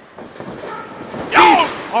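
Low murmur of a small wrestling crowd, then one loud shouted exclamation from a voice about one and a half seconds in.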